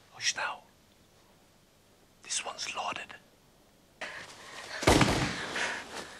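Two short whispered phrases, then about five seconds in a sudden loud bang followed by a rushing noise.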